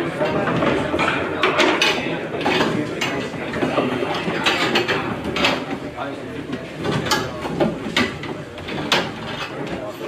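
Plastic chairs with metal legs being picked up and set down by many people, knocking and clattering at irregular moments, over the murmur of a standing crowd talking.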